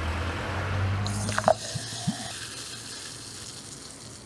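Cola poured from a plastic bottle into a glass, with a few gurgles in the first couple of seconds, then the carbonated drink fizzing as its foam head rises, the hiss slowly fading.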